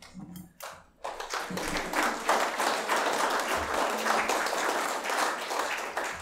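Congregation applauding: a few scattered claps, then general clapping that fills in about a second in and holds steady.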